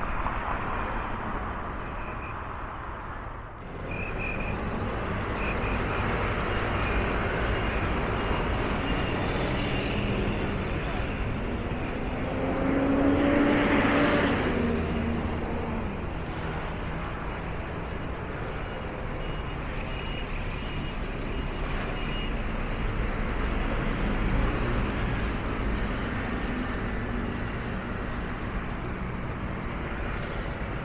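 Road traffic on a city street: a steady hum of passing cars. About halfway through, a louder motor vehicle goes by, its engine note falling away as it passes.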